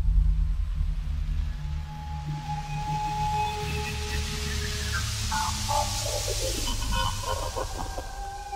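Ambient electronic drone music: a deep, steady low drone with a hiss that swells through the middle, and a cluster of falling glide tones in the last few seconds.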